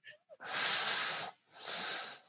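Two breathy, voiceless exhalations close to a microphone, a long one followed by a shorter one: a person laughing under their breath.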